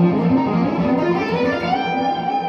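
1978 Ibanez Artist 2630 semi-hollow electric guitar played through a 1979 Fender Deluxe Reverb amp: a quick single-note picked line that climbs in pitch and settles on a held note near the end.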